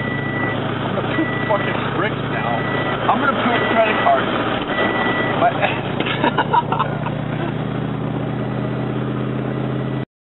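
A car's electronic chime beeping five times, about one beep a second at one steady pitch, over the steady hum of an idling engine; the beeps stop about five seconds in, and a few clicks follow.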